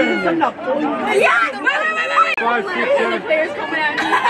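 Spectators chatting, several voices talking over one another close to the microphone.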